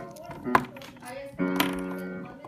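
Piano playing in the background: held notes fading, then a new chord struck about a second and a half in. Two short clicks sound over it, one about half a second in and one just after the chord.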